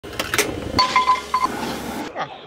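Two sharp clicks at a gas stove burner as it is lit, then a metallic clank and a ringing tone that comes and goes for about half a second, over a low steady hum.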